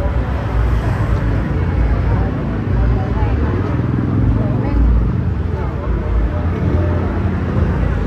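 Busy street ambience: a steady rumble of motor traffic with people talking indistinctly.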